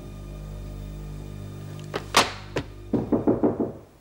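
Held background music tones fade out, then a single sharp thump about halfway through. Near the end comes a quick run of about six knocks on a door.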